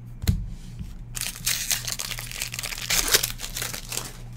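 A sharp knock just after the start, then about three seconds of dense crinkling and tearing: a trading-card pack's wrapper being torn open and handled.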